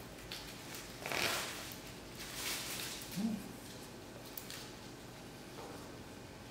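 Plastic wrap rustling and a raw whole chicken being handled while it is trussed with kitchen twine, in a few irregular swishes, the strongest about a second in. A brief low tone sounds just past three seconds in.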